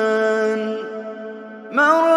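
A male reciter chanting the Quran in melodic tajweed style, holding one long steady note that fades out, then beginning a new phrase with a rising glide near the end.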